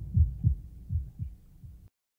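Soft low thumps in pairs, like a heartbeat, growing fainter, then cut off into silence just before the end.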